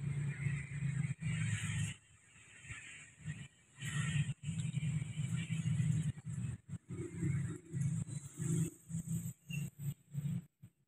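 Faint, distant diesel locomotive horn sounding the Semboyan 35 warning of an approaching train, heard in uneven, broken stretches with short gaps.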